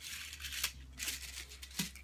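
Paper rustling and crinkling as a chocolate is pulled out of its paper candy cup in a boxed assortment, in two short spells, with a sharp click near the end.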